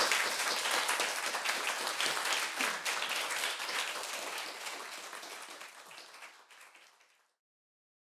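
Audience applauding, loudest at the start and fading out steadily until it gives way to silence about seven seconds in.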